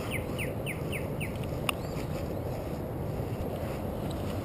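A bird calling a quick series of short down-slurred notes, about four a second, that stops a little over a second in, over steady outdoor background noise. A single sharp click comes near the middle.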